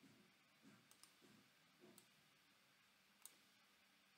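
Near silence broken by a few faint computer mouse clicks, four short sharp clicks with the loudest about three seconds in.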